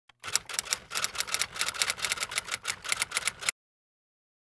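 Typing sound effect: a quick, uneven run of keystroke clicks lasting about three seconds that stops abruptly.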